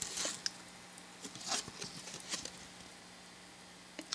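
Faint rustling and brushing of Topps trading cards handled between fingers as a card is turned over, with a few short, soft scrapes in the first half.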